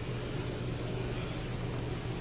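Steady low hum with an even hiss, with no distinct knocks or clicks.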